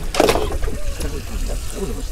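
Water trickling and sloshing under a steady low rumble, with a short sharp noise about a quarter second in.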